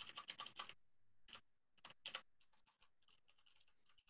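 Faint typing on a computer keyboard: a quick run of keystrokes, then a few single key clicks, stopping a little after two seconds in.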